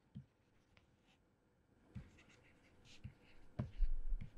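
Pen writing by hand, faint scratching strokes with a few light ticks, and a soft low bump near the end.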